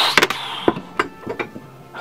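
A handful of sharp clicks and knocks of plastic toys being handled, after a short rushing noise at the start.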